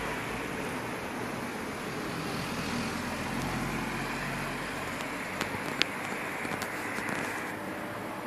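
Steady noise of road traffic, dulled by the surrounding hedges, swelling between about two and seven seconds in. A few brief sharp clicks come near the middle.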